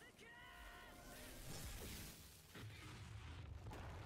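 Faint anime soundtrack: a character's voice calls out an attack name, followed by a rushing blast-and-crash sound effect of the attack landing.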